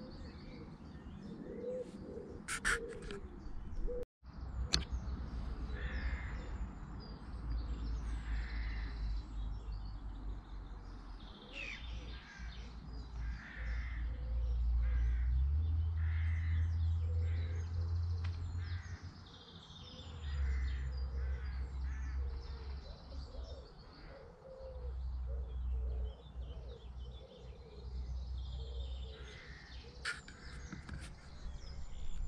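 Birds calling, among them repeated short caw-like calls, over a low rumble that swells and fades and is loudest about halfway through.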